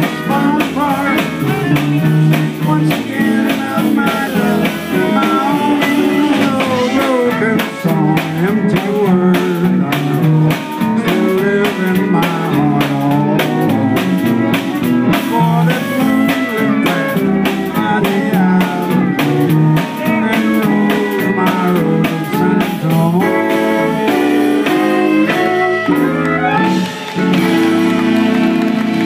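Live western swing band playing an instrumental passage: fiddles carry the melody over a steady drum-kit beat, with guitar and keyboard. The notes grow longer and held near the end.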